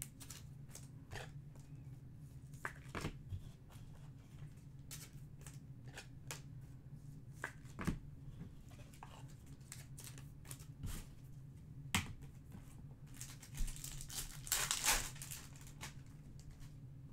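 Trading-card pack handling: scattered light clicks and taps of cards and wrappers, building near the end into a burst of crinkling and tearing as a foil pack wrapper is ripped open, over a faint steady low hum.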